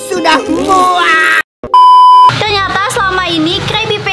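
A loud, steady electronic beep about half a second long cuts into animated cartoon dialogue just before halfway, after a brief drop to silence; excited cartoon speech runs before and after it.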